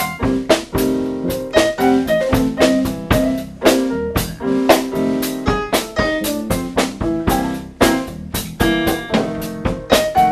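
Live band playing a blues number: electric keyboard chords in a steady rhythm over a drum kit with sharp snare and cymbal hits.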